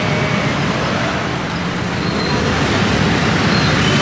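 Busy street traffic: a steady, even noise of passing vehicles.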